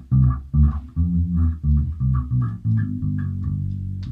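Electric bass guitar playing a run of single plucked notes, then a held note near the end. It is a demonstration of linear (horizontal) playing, the fretting hand moving along the same string.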